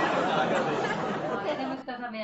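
Dense, indistinct chatter of voices that cuts off abruptly near the end, where one clear voice starts speaking.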